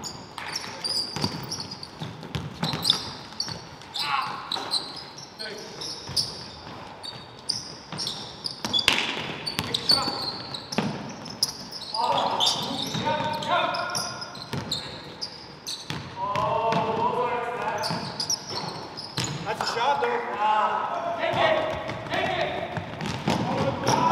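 Indoor basketball game sounds: a basketball bouncing on the hardwood court in repeated sharp knocks, with short high-pitched sneaker squeaks and players' voices calling out, the voices strongest in the second half.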